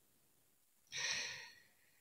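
A man takes an audible breath, a short breathy rush of about half a second, about a second in; the rest is near silence.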